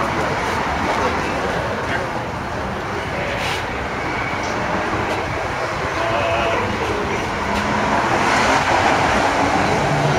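Steady, even background noise with no clear rhythm. Faint voices come through it in the second half.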